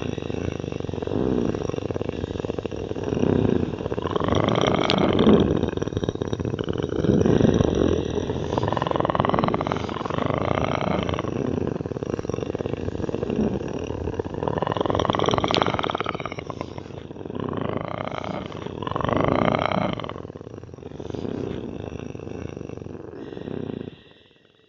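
A loud, rough roaring sound score, with swelling tones that rise in pitch again and again at irregular intervals of a few seconds; it cuts off suddenly at the end.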